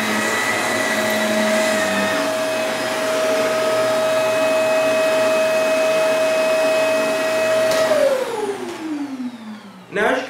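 Shark Rotator Powered Lift-Away canister vacuum running steadily on carpet with a constant whine. About eight seconds in it is switched off and the motor winds down in a falling whine that fades over the last two seconds.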